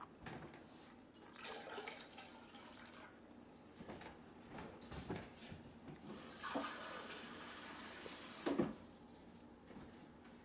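Kitchen faucet running water into a plastic measuring cup for about two seconds in the second half, ending with a sharp knock. A shorter rush of noise comes about a second in.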